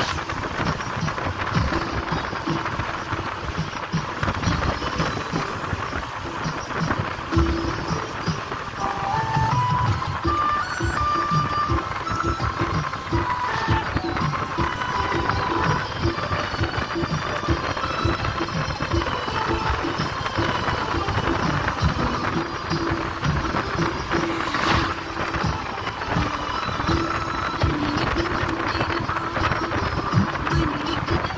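Steady rumble and rush of a moving vehicle, with music playing over it; a short rising run of notes comes about ten seconds in.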